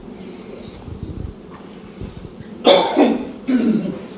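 A person coughing twice in quick succession in a small room, near the end, two short loud coughs about a second apart over faint room noise.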